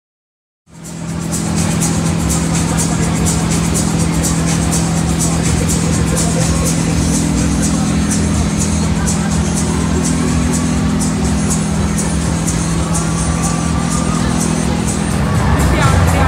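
Loud fairground din that fades up about a second in: music with a steady beat over a constant low hum of ride machinery, with voices in the crowd.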